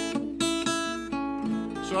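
Steel-string acoustic guitar strumming an A7 chord, restruck several times about every half second.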